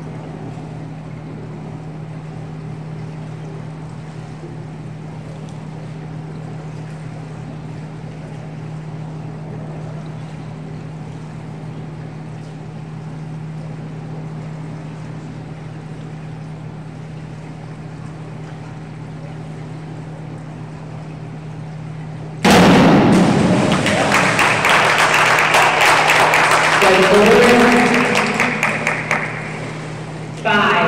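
Steady low hum of the indoor pool hall, then about 22 seconds in a diver's entry splash, followed at once by loud applause and cheering from the spectators that fades over about six seconds.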